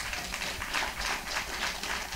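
Scattered applause from a hall audience, a crackle of many quick hand claps heard through the room, in reaction to a line of testimony.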